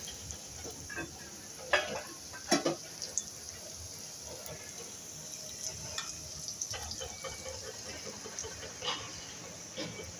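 Okra frying in hot oil in an aluminium pan, a steady sizzle, with a few sharp clinks of a spoon against the pan.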